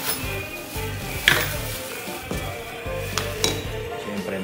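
Background music, over which a gaming chair's gas-lift cylinder and its plastic bag and packaging are handled: a few sharp knocks and clinks, the loudest just over a second in and two more about three seconds in.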